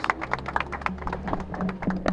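A rapid, irregular series of sharp clicks and taps, several a second, over a faint low murmur of voices.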